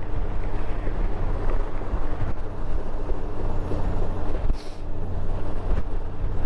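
Honda Gold Wing GL1800 flat-six engine running steadily while the motorcycle is ridden, mixed with wind and road noise. A brief hiss comes about four and a half seconds in.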